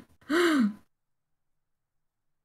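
A person's short, breathy vocal sound: a single drawn-out syllable whose pitch rises and then falls, lasting about half a second, shortly after the start.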